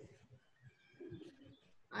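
Faint, indistinct background sounds over an open video-call line, with a brief low murmur about a second in.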